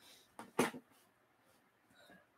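Two short clicks about a fifth of a second apart, the second louder, then faint room tone.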